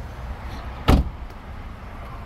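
A 2020 Hyundai Elantra's car door shut once, a single loud impact about a second in, over a steady low rumble.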